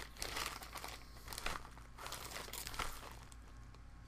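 A small plastic bag crinkling as it is handled and turned over in the hands, in irregular rustles that thin out in the second half.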